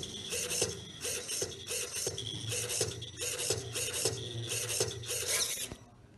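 Servo motors of a small robot arm whirring in short, repeated bursts as it moves stroke by stroke, with a marker pen scratching across paper as it draws letters. The sound stops shortly before the end.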